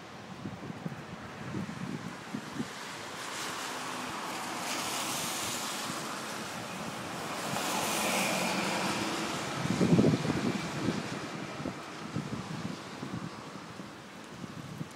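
Storm wind gusting, a rushing noise that swells over several seconds and then eases. Gusts buffet the phone's microphone in low rumbling thumps, the loudest about ten seconds in.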